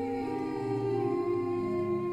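Church organ playing slow, held chords, the harmony changing about twice.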